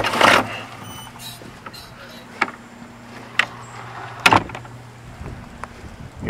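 A door opening with a short burst of noise, then a few sharp knocks about a second apart over a steady low hum that stops shortly before the end.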